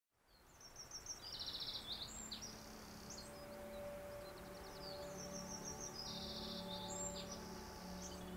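Quiet relaxation intro soundscape: recorded birdsong, the same phrase of high chirps heard twice about four seconds apart, over a soft steady held tone.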